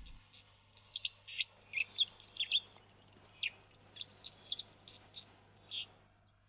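A small songbird calling in a scattered run of short, high chirps, a few each second, some sliding down in pitch.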